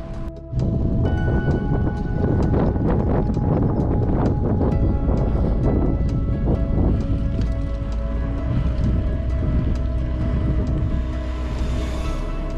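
Background music playing, with wind noise on the microphone underneath; it starts suddenly about half a second in.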